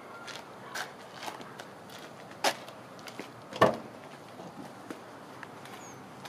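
Footsteps on pavement, a few light steps about half a second apart, then two sharper, louder knocks about two and a half and three and a half seconds in.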